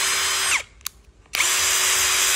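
A Dekton brushless cordless drill run with no load in short trigger pulls: a steady whine that spins down with a falling pitch about half a second in, a single click as the speed selector is slid from speed 1 to speed 2, then a second steady run from about a second and a half in.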